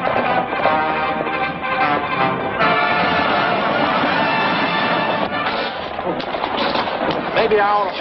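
Film-score chase music, sustained and loud, with a run of sharp cracks and knocks in the second half. A voice breaks in near the end.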